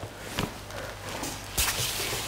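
Handling noise from a dental drill handpiece being taken up: a light click, then a sharper knock about a second and a half in, over a low steady hum.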